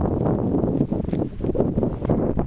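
Wind buffeting the microphone, a loud uneven rush that swells and dips in gusts.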